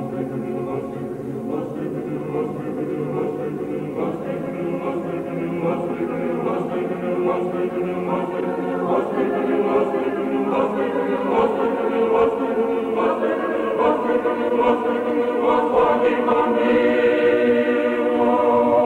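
A choir singing slow, sustained music that swells louder toward the end.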